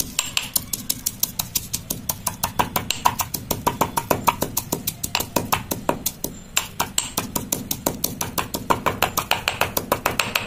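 Stone pestle pounding spices in a stone mortar, in rapid, even strokes several times a second.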